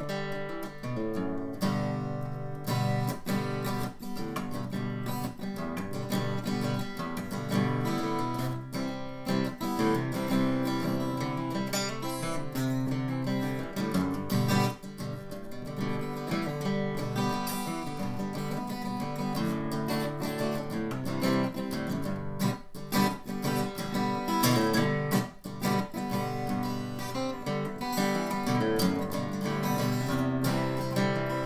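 Solo steel-string acoustic guitar, strummed and picked, playing chords around G, C and D.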